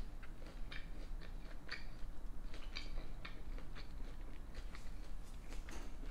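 Close-miked chewing of a mouthful of cheese-and-ranch-topped tater tots, heard as a string of irregular short mouth clicks.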